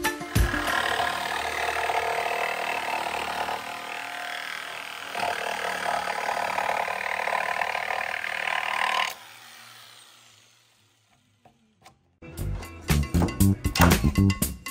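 Cordless jigsaw cutting through a thick wooden plank, the saw running steadily with a brief drop in level partway through, then stopping abruptly about nine seconds in. Background music with a beat comes in near the end.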